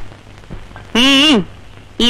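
A short break in dialogue over a faint steady hiss and low hum. About a second in, one short voiced syllable, about half a second long, rises slightly in pitch and then falls.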